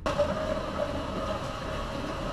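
A steady rushing machine noise that starts abruptly and runs on without a break.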